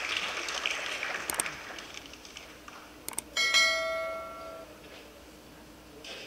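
A single bell-like chime rings once about three seconds in and dies away over a little more than a second.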